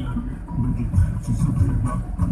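Road noise from a moving vehicle, a low, uneven rumble.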